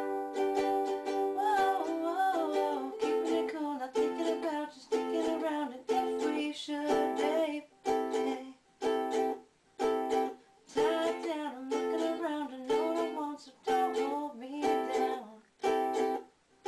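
Ukulele strummed in an acoustic song. Steady chords at first, then short, clipped chord strums with brief silences between them.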